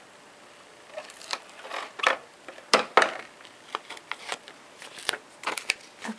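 ATG adhesive tape gun being run over paper: irregular clicks and short scraping rasps, the loudest two close together about three seconds in, with paper being handled.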